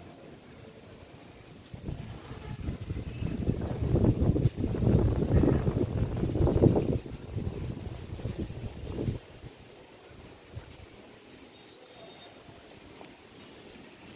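Wind buffeting the microphone: an uneven low rumble that rises about two seconds in and drops away about nine seconds in. Quiet outdoor ambience is left on either side of it.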